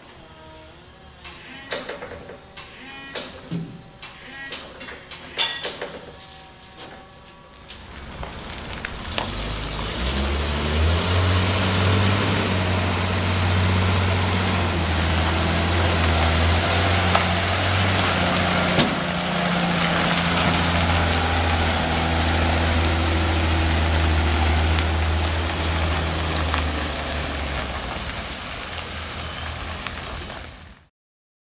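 Scattered knocks and clatter, then, from about eight seconds in, the engine of an old Chevrolet medium-duty flatbed truck loaded with a large stainless tank runs steadily and loudly, with a brief dip in the middle.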